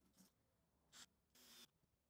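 Near silence: room tone, with two faint, brief handling noises about a second in and a moment later.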